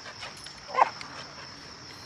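A dog gives one short yip about a second in, over crickets chirring steadily.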